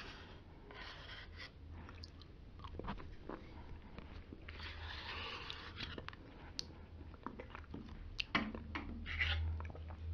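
Close-miked eating sounds of yogurt: wet mouth noises and clicks, with a plastic spoon scraping in the plastic cup. Three longer wet bursts come about one, five and nine seconds in, among scattered short clicks.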